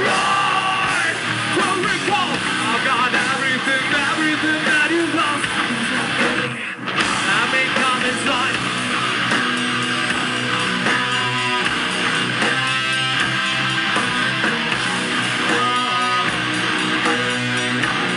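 Live heavy metal band playing: sung vocals over distorted electric guitar and drums. There is a brief break about seven seconds in, then a guitar riff in short repeated blocks.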